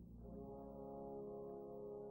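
Quiet orchestral music: a soft chord comes in about a quarter of a second in and is held steadily.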